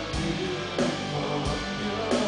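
Live rock band playing: sustained electric guitar and keyboard chords over drums, with a steady beat of drum hits about every two-thirds of a second.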